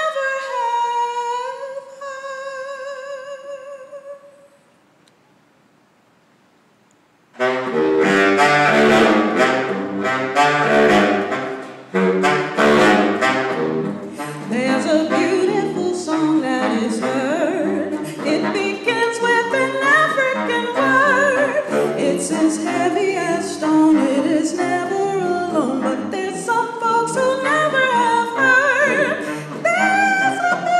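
A woman singing a cappella holds a long note with vibrato that fades away after about four seconds. After a few seconds of near silence a baritone saxophone comes in loud, playing a busy, fast-moving line that reaches down to low notes, and the singing voice comes back in near the end.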